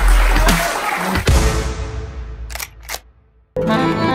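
Background electronic music ending on a heavy bass hit that dies away, then two quick clicks like a camera shutter, a brief gap, and accordion music starting about three and a half seconds in.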